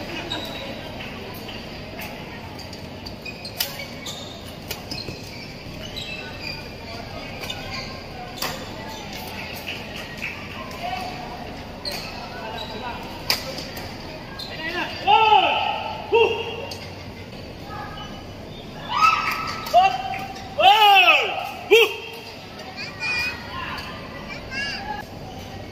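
Badminton rally: sharp racket strikes on a shuttlecock, about one a second. Then loud shouting voices come twice near the end and are the loudest sounds.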